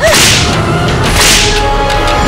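Two sharp whip-like swoosh sound effects, the first right at the start and the second just over a second in, over a low dramatic music bed.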